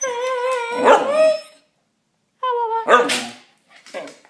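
Male Shikoku dog 'talking': a long, wavering, pitched call, then after a short pause a second, shorter call.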